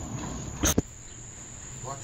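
Crickets trilling steadily in a high, even tone. A sharp knock from the phone being handled comes a little after half a second in.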